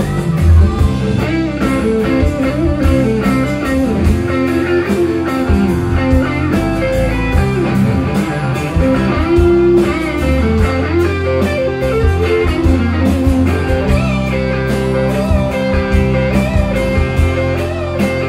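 Live blues band playing: an electric guitar plays lead lines with bent notes over bass, drums and keyboard.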